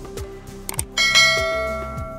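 Subscribe-button animation sound effect: a few short mouse clicks, then a bright notification bell chime about a second in that rings on and slowly fades.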